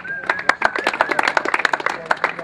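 A small group of people clapping: a quick, irregular run of separate hand claps. A thin, wavering whistle sounds over it for about the first second and a half.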